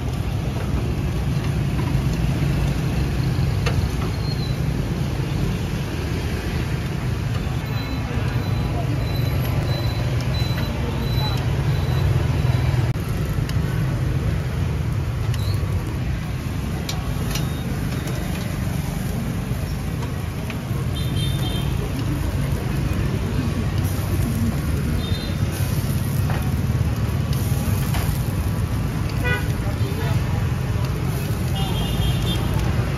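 A steady low rumble of street traffic and machinery, with a few short horn toots in the second half.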